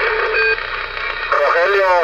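Static hiss from a Galaxy DX 33HML CB radio's speaker in a pause between words, with a brief tone about half a second in; then a man's voice comes back over the radio about a second and a half in.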